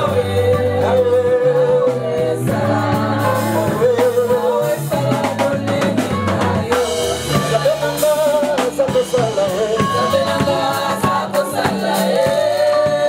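Live gospel band playing: electric bass, electric guitar, a Tama drum kit and keyboard, with a voice singing over them.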